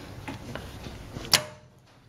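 A single sharp click about a second and a bit in from a bench-clamped car starter motor during a pinion-gear pop-out test, as the test lead touches the battery terminal and the magnetic switch throws the pinion gear out.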